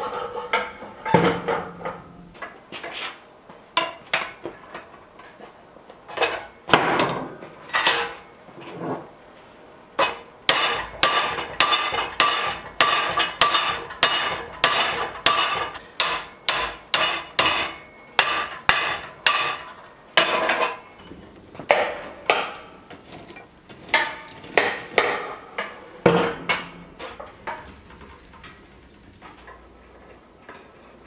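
Hammer blows on a heated metal rod clamped in a bench vise, bending it to shape while hand forging a door handle. A run of ringing metal strikes, about two a second through the middle stretch, more scattered near the start and end.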